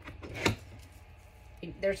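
A glittered tumbler being pushed onto the arm of a cup turner: a few light clicks, then one sharp knock about half a second in.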